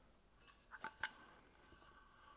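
A few faint clicks of an anodized aluminium camping pot lid being handled, followed by a faint, steady ringing from the metal.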